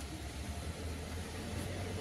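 Steady low hum with an even hiss, no distinct events.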